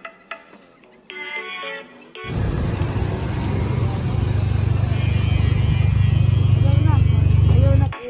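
Roadside street noise: a heavy low rumble with hiss that starts about two seconds in, grows louder and cuts off suddenly at the end.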